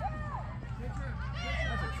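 High-pitched voices of several girls yelling and cheering at once, long drawn-out calls that overlap, over a steady low hum.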